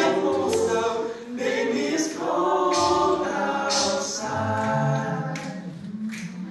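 Male a cappella group singing in close harmony into microphones, with a lead line over backing voices and a low sung bass part. The singing comes in phrases with short breaks between them.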